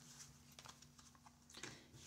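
Near silence with a few faint clicks of tarot cards being handled, drawn from the deck and laid on a table, the clearest about one and a half seconds in.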